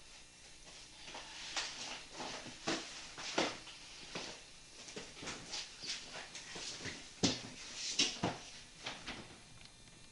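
Irregular knocks, clatters and rustles of someone handling things at a refrigerator, the sharpest knocks coming about seven and eight seconds in.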